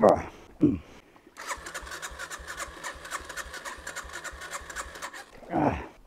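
The electric starter of a Yamaha TW200 cranks its single-cylinder engine for about four seconds, turning it over at a steady beat of roughly five a second without it firing. The bike has just stalled in deep creek water.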